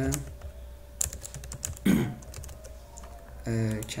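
Computer keyboard being typed on: quick runs of key clicks, mostly about one to two seconds in, as a web address is entered.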